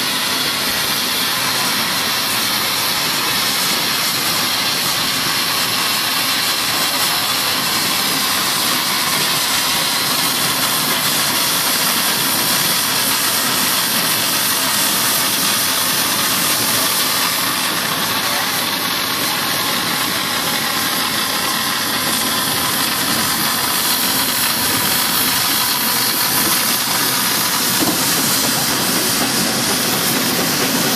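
Steam traction engines moving slowly while hauling a heavy low-loader, with a steady hiss of steam.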